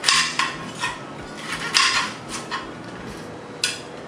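Chef's knife chopping celery on a cutting board: about seven sharp, irregular knocks of the blade striking the board, with three close together in the first second and the last one near the end.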